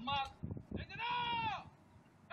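A high, drawn-out human call: a short cry at the start, then a longer held call about a second in that rises and falls in pitch.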